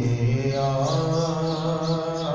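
A man reciting a naat in an unaccompanied sung style, drawing out long held notes that bend slowly in pitch.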